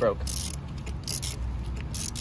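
Ratchet wrench on a spark plug socket extension clicking in three short bursts about 0.7 s apart as the handle is swung back, loosening a spark plug, over a steady low hum.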